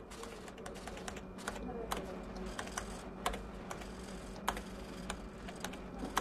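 Someone typing on a computer keyboard: irregular key clicks at an uneven pace, a few strokes sharper and louder than the rest.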